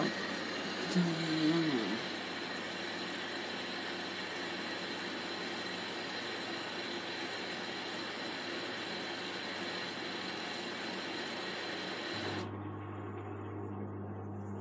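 Electrolux Time Manager front-loading washing machine running, its drum turning the load: a steady whir with a thin high whine. Near the end the whir cuts off abruptly and a steady low hum takes over.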